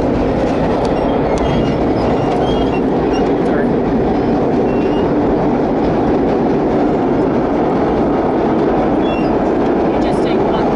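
Vintage R1-9 subway cars running through a tunnel: a loud, steady rumble of wheels and traction motors on the rails, with faint brief squeals and a few clicks scattered through it.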